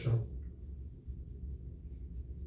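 Dry-erase marker writing on a whiteboard: a run of short, faint, scratchy strokes over a low, steady hum.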